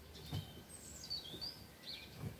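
A small bird chirping faintly in the background: a few short, high gliding notes around the middle, over a quiet room background.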